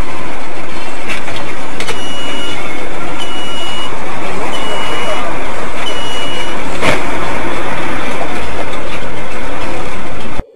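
Loud, distorted road and traffic noise overloading a dash cam's microphone, with four evenly spaced high beeps about a second and a half apart, and a sharp knock about seven seconds in.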